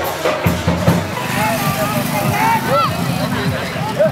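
A few drum strokes in the first second, then a crowd of many overlapping voices of a street procession, with street noise underneath.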